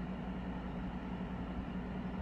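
Steady room hum and hiss with a low, even tone underneath: the background noise of a lecture room picked up by the microphone.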